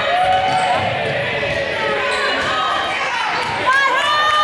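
Basketball being dribbled on a gym's hardwood floor, with high raised voices of players and spectators calling out.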